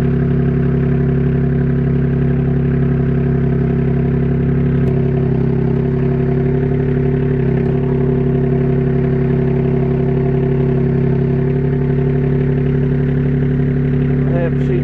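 Forklift engine running steadily close by, its note shifting slightly about five seconds in and again just before eight seconds.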